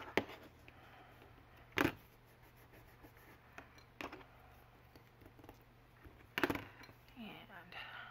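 Quiet handling of paper and craft tools on a cutting mat: a few short sharp taps and knocks, the loudest about two seconds in and again about six and a half seconds in.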